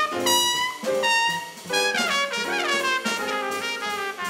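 Jazz trumpet soloing over upright bass and drums, playing held notes and quick runs, with a falling run of notes about two and a half seconds in.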